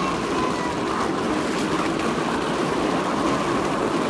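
Steady outdoor street noise: a continuous rushing rumble with no distinct events.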